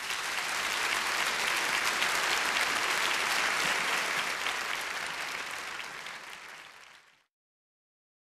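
Audience applauding, a dense steady clapping that thins a little and then cuts off suddenly about seven seconds in.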